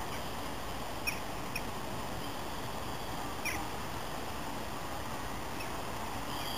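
Steady outdoor background noise at a railway station, with three brief high squeaks about one, one and a half and three and a half seconds in.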